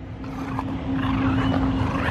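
A motor running: a steady low hum over a rumble, growing louder across the two seconds.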